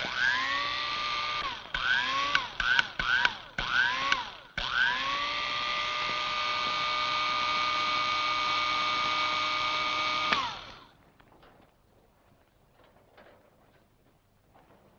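Electric hair clippers switched on, the motor rising in pitch as it comes up to speed and then running. They are flicked off and on in several short bursts, then run steadily for about six seconds before being switched off and winding down.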